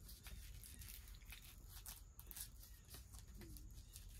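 Near silence with faint rustling and a few soft handling clicks, as a sock is pulled off and a slip-on sandal is put on.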